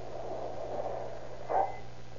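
Radio-drama sound effect of a car pulling in: a steady engine-like noise, then a short sharper sound about one and a half seconds in. A steady hum from the old transcription runs underneath.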